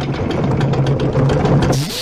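Cartoon sound effect of a fax machine transforming into a robot: a steady low mechanical hum with dense rattling, breaking off near the end.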